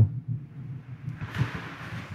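A pause in a spoken reading: low room hum from the microphone and sound system, with a soft breathy noise about a second and a half in.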